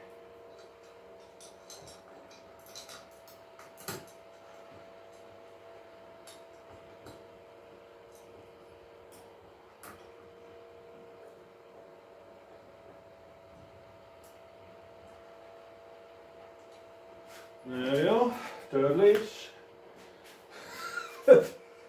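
Faint scattered metallic clicks and taps of screws and tools being handled while a gaming chair is assembled, over a steady faint hum. A man speaks a few short words near the end.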